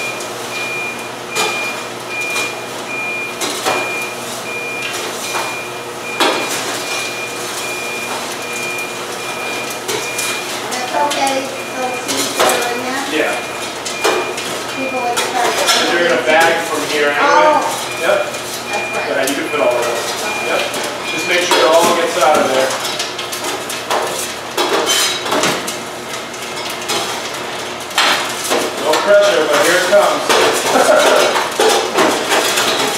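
A popcorn machine's electronic indicator beeping, one high tone pulsing fast and evenly, which stops about 21 seconds in; the machine hums steadily underneath. Scattered clicks and knocks and background talk run alongside.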